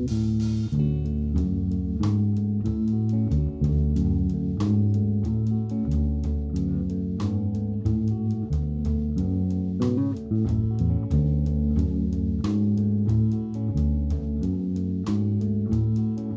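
Live jazz-rock trio playing: electric bass carrying a busy line of low notes under electric guitar and a drum kit keeping a steady beat, with a cymbal crash near the start.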